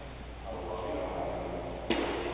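A voice speaking at a distance in a church, then a single sharp click near the end.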